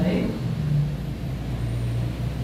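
A low, steady mechanical drone that holds through the pause in speech.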